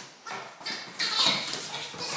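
Excited dog playing with a ball toy on a tile floor, making several short vocal sounds, the loudest about a second in.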